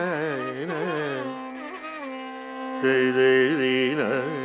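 Carnatic classical music in raga Shuddha Dhanyasi: a male voice sings ornamented, oscillating phrases over a steady drone. The melody thins out to the drone about halfway through, and a louder, brighter melodic phrase enters near the end.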